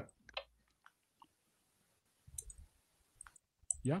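Near silence broken by a handful of faint, scattered clicks, then a single spoken word right at the end.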